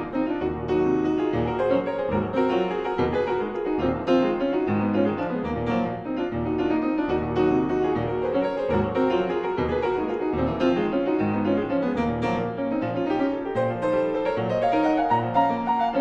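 Mason & Hamlin grand piano played solo in a quick, busy passage: many rapid notes in the middle and upper range over a regular pulse of bass notes.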